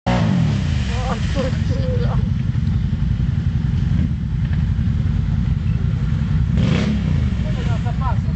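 Quad bike (ATV) engine revving hard as its wheels spin in deep mud, getting nowhere: the quad is bogged down. The revs surge briefly near the end.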